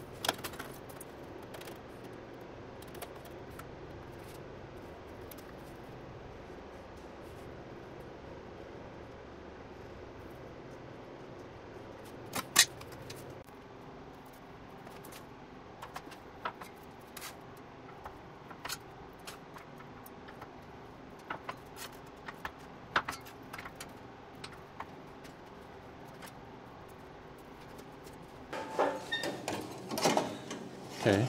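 Scattered metallic clicks and clanks of sheet steel being handled and bent on a manual sheet metal brake, over a steady low shop hum. The loudest is a single sharp clank about twelve seconds in.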